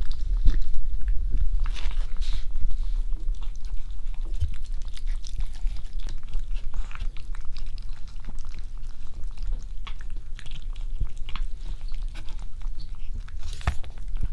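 A cat eating close to the microphone: a steady run of small chewing and biting clicks.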